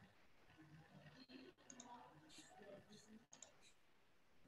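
Near silence on a video-call line, with a faint, muffled background voice and a few small clicks.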